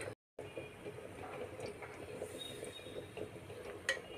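Cooking oil heating in a pan on a gas stove, a faint steady crackle with a single sharp click near the end.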